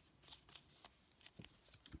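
Near silence, with a few faint rustles and light clicks of a foil minifigure blind bag being handled and folded.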